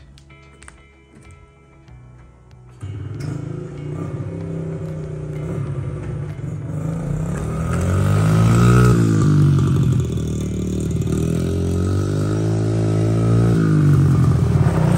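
A Honda CRF50F pit bike's small single-cylinder four-stroke engine comes in suddenly about three seconds in, then runs and revs up and down twice as it is ridden.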